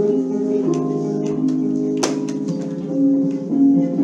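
Instrumental music on a plucked string instrument, slow overlapping notes with a harp-like ring, and a single sharp click about halfway through.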